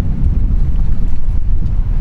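Wind buffeting the microphone: a steady, loud low rumble with no distinct events.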